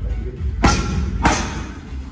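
Two hard strikes from a boxing-gloved fighter landing on Thai pads, about half a second apart, each a sharp smack with a short ring-off.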